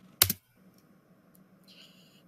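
A single short, sharp keyboard-like click about a quarter of a second in, then quiet with a couple of faint ticks.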